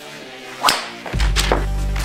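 A golf club swishing through and cracking into a golf ball about two-thirds of a second in, then a second sharp hit under a second later as the ball strikes a propped-up telephone book and deflects off it. Music with a deep steady bass comes in just after a second.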